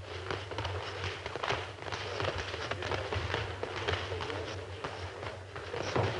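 Sparring boxers' gloves landing punches and their feet scuffing and shuffling on the ring canvas, an irregular quick run of slaps and thuds.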